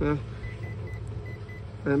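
Mitsubishi IH rice cooker's control panel giving a run of about five faint short beeps, a fraction of a second apart, as its buttons are pressed to step through the cooking modes.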